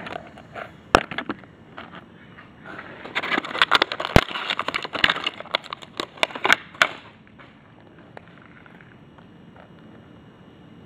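Stiff clear plastic packaging crinkling and crackling in the hands while a reagent dropper bottle is worked out of it. There is one sharp click about a second in, then a dense run of crackles from about three to seven seconds.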